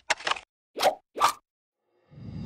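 Cartoon sound effects for an animated logo: a quick run of small clicks, then two short plops about half a second apart.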